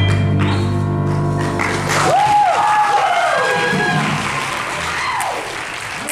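A jazz band's final chord is held and rings out, then the audience applauds, with whooping cheers, from about two seconds in, dying away near the end.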